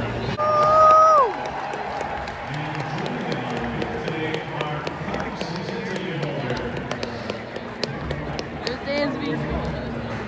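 Ballpark crowd in the stands: a continuous murmur of many people talking. About half a second in comes one loud, held, high yell that drops in pitch as it ends.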